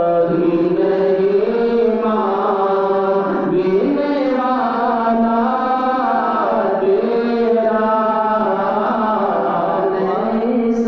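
Men's voices singing a naat, an Urdu devotional poem, in long melodic lines that rise and fall, without instruments.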